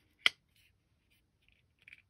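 A single sharp metallic click from a karambit flipper folding knife in the hand, about a quarter second in, followed by a few faint handling ticks near the end.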